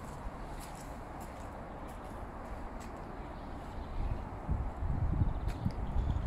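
Quiet outdoor background ambience, with low rumbling on the microphone that grows in the second half.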